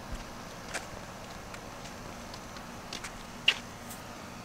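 Quiet outdoor background with a faint steady low hum and a few faint, irregular clicks and taps, the clearest about three and a half seconds in.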